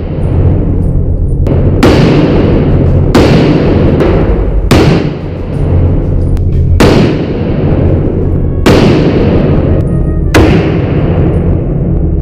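About six M1 Garand rifle shots, each a sharp crack followed by a long echo in the indoor range, spaced roughly one and a half to two seconds apart, over background music.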